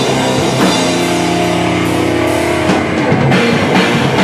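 Hardcore band playing live, with distorted electric guitars and a drum kit. About half a second in, the band holds a chord for about two seconds, then drums and cymbal crashes come back in near the end.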